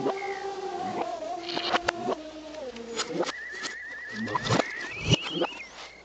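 A cartoon soundtrack played backwards: held music notes that give way to a string of sharp cartoon sound effects, with a fast warbling trill in the middle and an animal-like cry.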